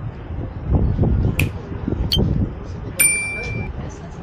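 Busy pedestrian street: murmur of passers-by talking, with a few sharp clicks, and a single short metallic ding about three seconds in that rings for under a second.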